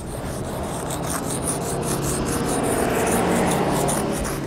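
Sidewalk chalk scraping across pavement in quick repeated strokes, about four a second. A low hum runs beneath it and grows louder in the second half.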